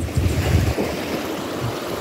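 Small waves washing up onto a sandy beach, a steady surf wash, with a low rumble of wind on the microphone during the first second.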